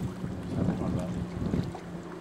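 Wind buffeting the microphone in irregular low gusts for a second or so, over a steady low hum.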